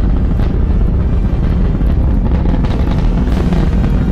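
A deep, steady rumble of a rocket launch under dramatic soundtrack music.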